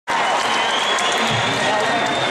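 Concert audience applauding, with voices in the crowd.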